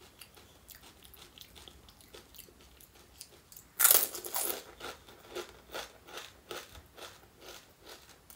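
A whole panipuri, a crisp puri shell, crunching loudly as it is bitten into a little under four seconds in, then chewed with crunches about twice a second. Before the bite there are only faint mouth sounds.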